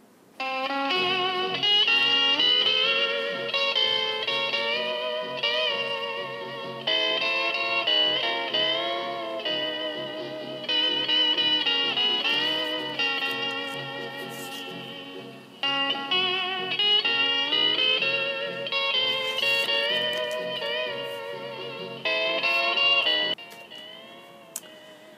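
Instrumental Hawaiian steel guitar music in an older style, the steel's notes sliding and wavering over a backing band. It starts about half a second in and stops near the end.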